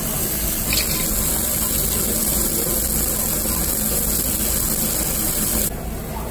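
Beef kalbi sizzling on a gas-fired yakiniku grill: a steady hiss that drops off sharply near the end.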